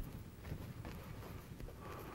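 Fan brush loaded with thick white oil paint dabbing and scrubbing against canvas: faint, irregular taps and scratches.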